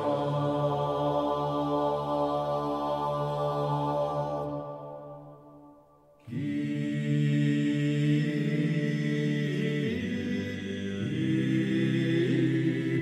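Male vocal ensemble singing the Kyrie of an early-16th-century polyphonic Requiem in long held chords over a low drone. About four and a half seconds in the phrase fades away to a brief silence, and at about six seconds the voices come back in together on a new chord.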